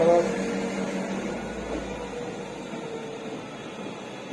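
A steady background hum with a faint hiss, slowly growing quieter, after the last word of speech right at the start.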